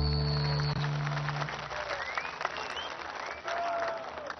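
A live band's final held chord rings out and fades within the first second or so, giving way to applause from a large concert audience, with a few short rising whistles from the crowd.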